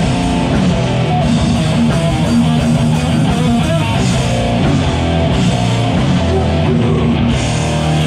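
Hardcore punk band playing live, a loud, guitar-led riff with the bass running underneath and no vocals.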